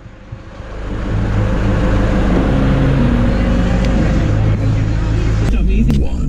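Car engine running steadily, swelling up within the first second and then holding an even low rumble.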